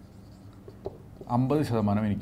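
Marker pen writing on a whiteboard: faint short strokes with a small click, then a man starts talking again about a second and a half in.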